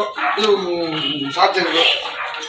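A man's raised voice, speaking loudly in short bursts.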